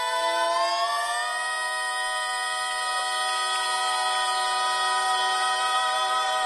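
A man's and two women's voices in close southern gospel harmony holding a long sustained chord, sliding up together about a second in and then held steady.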